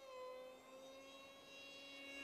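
Faint whine of a distant RC park jet's brushless motor and 6x4 propeller (2212, 2200 Kv motor) in flight, dipping slightly in pitch at first and then holding steady.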